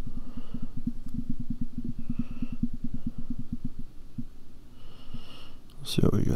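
A rapid, even run of dull low thumps, about ten a second, weakening about four seconds in.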